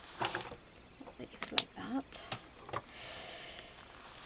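Paper and card rustling, with a few short taps and scrapes, as a thick handmade junk journal is handled and its layered pages are moved, followed by a softer steady rustle.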